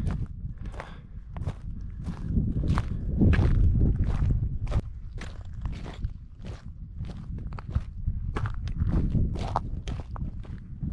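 A hiker's footsteps crunching on a rocky, gravelly trail, about two steps a second, over a steady low rumble.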